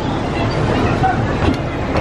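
Amusement park ride train rolling along its track, a steady low rumble from the moving passenger cars.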